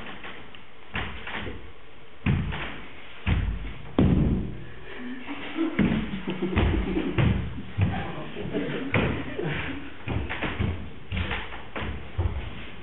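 Irregular knocks and thumps of actors moving and handling things on a stage floor in a large, echoing room, with brief voices between them.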